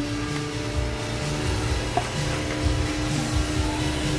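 Restaurant background: music playing over a steady room hum, with one small click about two seconds in.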